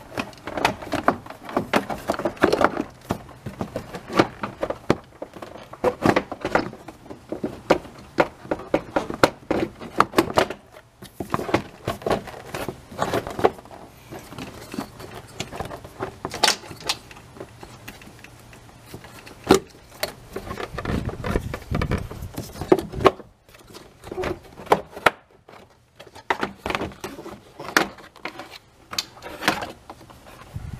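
Plastic radiator fan shroud being worked up and out of a tight fit in the engine bay: an irregular run of knocks, clicks and scrapes of plastic against the parts around it, easing off briefly about two-thirds of the way through.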